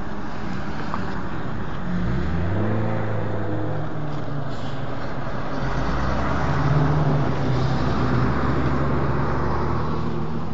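Motor vehicle engine running close by: its pitch climbs about two seconds in, and from about six seconds a deeper, louder engine hum holds steady over continuous road noise.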